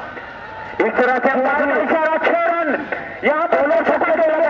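A man's voice giving running cricket commentary, starting about a second in after a short pause, with another brief break near the end.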